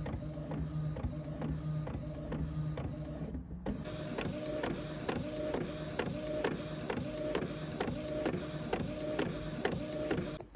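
Inkjet printer printing: the print-head carriage shuttles back and forth about three times a second, with a whir and a click on each pass.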